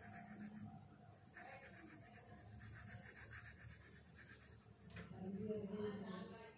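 Coloured pencil shading on paper: a faint, steady scratchy rubbing of the pencil lead back and forth. Near the end a louder, briefly pitched sound rises over it.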